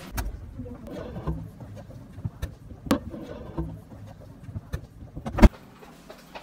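Scattered light knocks and clicks of dishes and objects being handled, over a low rumble, with one sharper knock about five and a half seconds in.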